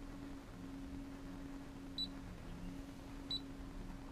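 Two short, high beeps from the Brother SE425 embroidery machine's touch-panel keys, about a second and a third apart, over a steady low hum.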